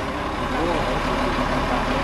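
Concrete mixer truck's engine running steadily. A voice calls out briefly about half a second in.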